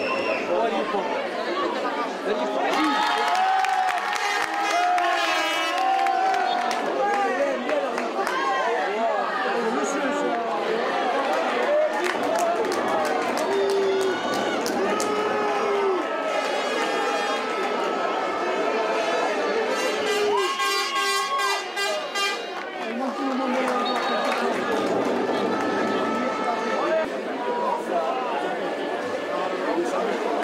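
Almost continuous talking, with crowd noise behind it.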